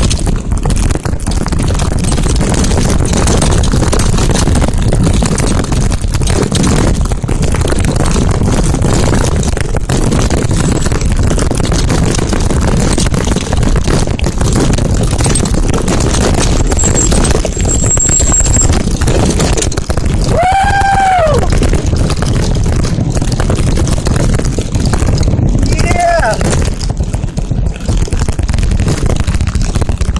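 Wind rushing over the microphone and the rattle of a mountain bike descending fast over a rocky dirt trail, a loud steady rush. Twice, about two-thirds of the way through and again some five seconds later, a short high cry rises and falls over the noise.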